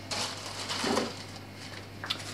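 Plastic grocery packaging crinkling and rustling as it is handled, in two short bursts in the first second, over a low steady hum.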